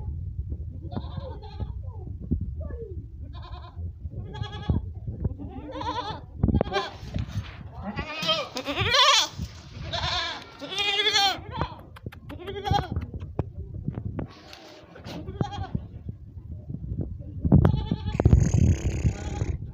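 Makhi Cheeni goats bleating again and again, one wavering call after another, the loudest calls about halfway through.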